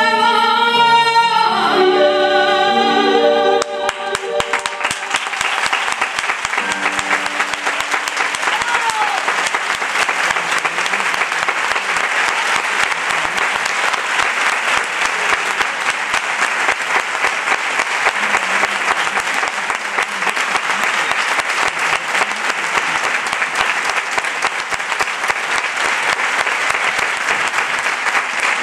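A female singer and orchestra hold the final note of a copla song, which ends about three and a half seconds in. Then a theatre audience applauds steadily.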